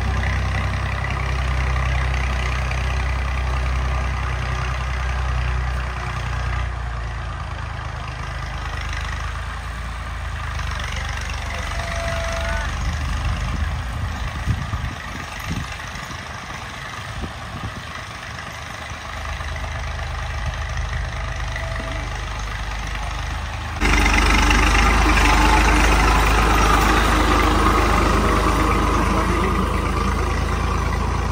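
Massey Ferguson 240 tractor's three-cylinder diesel engine running steadily as it pulls a cultivator and leveling plank across tilled soil. The sound is softer while the tractor is farther off and much louder about three quarters of the way in, when it is close by.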